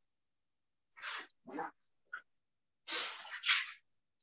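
Karate kata practice: a handful of short, rushing bursts of noise, breath-like or cloth-like, broken by silences, as students move through their techniques.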